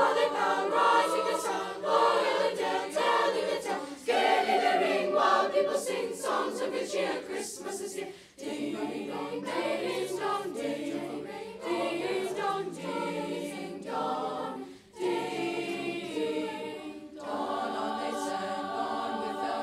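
Children's school choir singing a Christmas song together, phrase after phrase, with short breaks about eight and fifteen seconds in.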